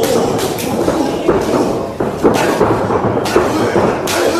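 Thuds of wrestlers' bodies and feet hitting the ring canvas, several sharp impacts over a steady background of spectators' voices in a hall.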